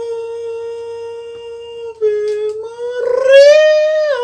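A man's voice singing long held notes without words, like a wail: one steady note, a short break about two seconds in, then a new note that climbs and wavers, falling off near the end.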